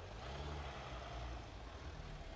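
Mercedes-Benz G-Class SUV engine running at low revs as it rolls slowly past, a low hum that rises slightly and then eases off.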